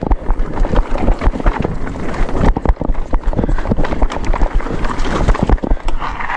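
Mountain bike descending a dry dirt trail: tyres rumbling over the ground, with frequent knocks and rattles from the bike over bumps. Heavy wind buffeting on the camera microphone runs under it all.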